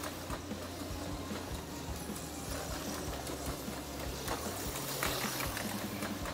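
Auto World X-Traction HO slot car (a 1969 Dodge Charger Daytona) running laps on a plastic slot track, its small electric motor whirring steadily.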